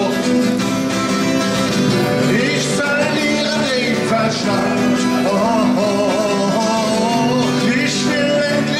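A man singing with his own strummed twelve-string acoustic guitar; the guitar carries on alone at first, and the sung melody comes in about three seconds in.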